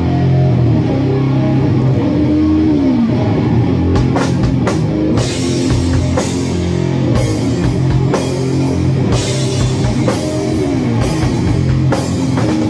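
Heavy, distorted electric guitar riff with a live drum kit in a slow doom/stoner sludge style. The guitar sustains low chords and slides its pitch down twice, and the drums pick up with cymbal crashes about four seconds in.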